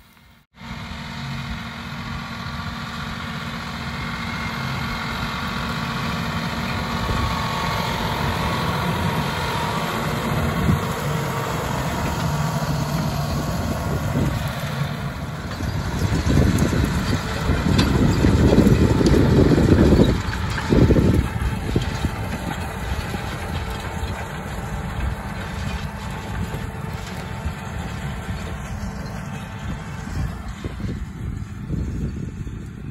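John Deere tractor engine running steadily while pulling a seed drill across a field. It grows louder just past halfway, loudest for a few seconds as it comes close, then settles back.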